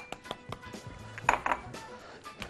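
An egg knocked twice against a glass bowl to crack it, two sharp taps close together, over faint background music.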